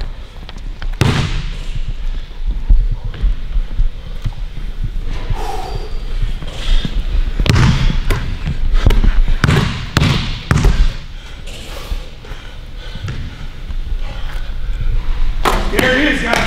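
Basketball bouncing on a hardwood gym floor, a series of separate, irregularly spaced bounces, busiest past the middle.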